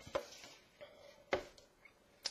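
A few light knocks and clicks of a cardboard product box being handled on a table, the sharpest about a second and a half in.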